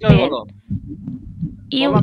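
A person's voice speaking over a video call, with a pause of about a second in the middle where only a low hum remains.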